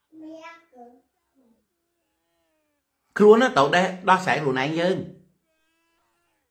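Speech: a short, faint, high-pitched call in the first second, then a person talking for about two seconds.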